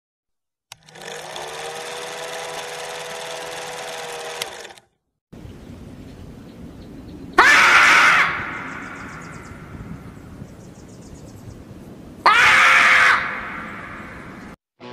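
A steady buzzing tone with hiss, an old-film countdown sound effect, lasts about four seconds and stops. Then a marmot screams twice, each a loud, shrill call about a second long, the second about five seconds after the first, over a hissy background.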